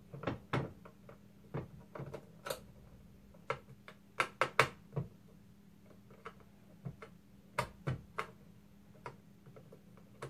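Irregular small clicks and taps of a small screwdriver and screws working on a plastic airsoft drum magazine as the last cover screws are backed out, with a quick cluster of louder clicks about four to five seconds in.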